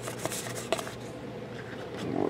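Baseball cards in plastic top loaders and sleeves being handled and set down: a few light clicks and rustles in the first second, then a quiet room hum.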